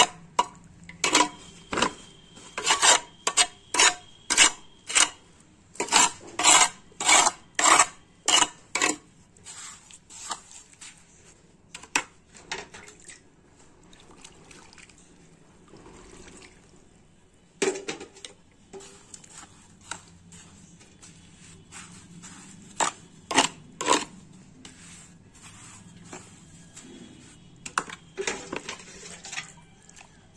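A plastic scoop scraping and knocking through wet sand and cement as the mortar is mixed by hand: quick strokes about two a second for the first nine seconds or so, then scattered single strokes.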